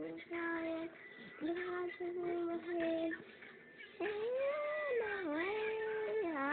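Young child singing held notes with no clear words: a few short notes at one steady pitch, a short pause, then a louder note that swoops up and falls back down.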